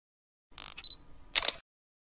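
Camera-shutter-style sound effect: a click with a brief high tone, then a second, sharper click less than a second later.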